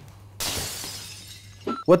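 An editing sound effect between scenes: a sudden hissing, shattering burst of noise about half a second in that fades away over about a second.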